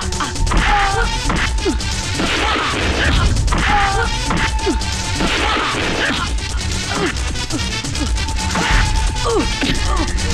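Film fight sound effects: a rapid series of punch and kick impacts, with action music underneath.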